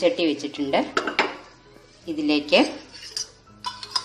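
Metal kadai being set down and shifted on a gas-stove burner grate: several metal clanks and scraping squeals, with a few more clinks near the end.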